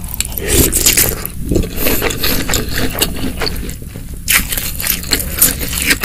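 Close-miked chewing of spicy seblak with snow fungus: an irregular run of wet, crackly clicks and crunches from the mouth.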